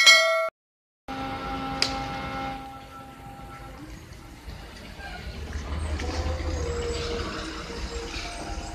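A short, loud notification chime at the very start, then the engine of a passing S.E.T.C. coach, a low rumble that swells about five and a half seconds in as the bus draws close. Steady held tones sound for the first couple of seconds after the chime.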